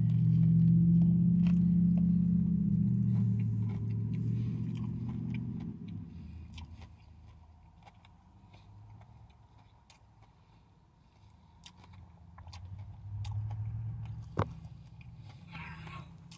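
A bite into a crispy breaded fish sandwich and closed-mouth chewing, heard as many small crunching clicks with a sharper click near the end. A low drone underlies it, loudest for the first six seconds, then fading and returning briefly around thirteen seconds.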